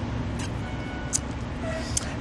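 Street background noise: a steady low traffic rumble, with a couple of brief faint clicks.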